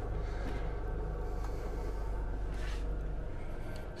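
Fischer Panda marine diesel generator running below deck as a steady low hum, weakening a little near the end.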